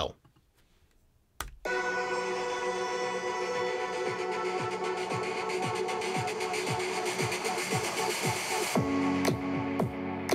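Electronic music with a steady beat playing from a 2019 16-inch MacBook Pro's built-in six-speaker system, with two force-cancelling woofers and a tweeter per side. It starts after about a second and a half of near silence and a click. The sound is even and clean, with less pronounced bass.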